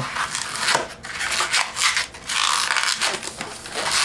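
Latex 260 modelling balloon rubbing and scraping against itself and the hands as it is twisted into a pinch twist, with the densest stretch of rubbing about two seconds in.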